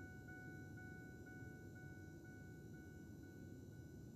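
A faint, steady high ringing tone that begins suddenly and pulses lightly about twice a second, over a low rumble.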